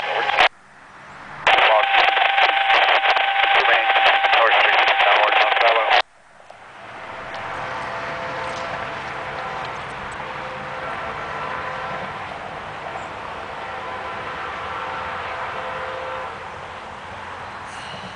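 Railroad scanner radio transmission: a tinny, narrow-band voice that drops out briefly about half a second in, resumes, and cuts off abruptly at about six seconds. After it, a quieter steady outdoor hum with faint held tones.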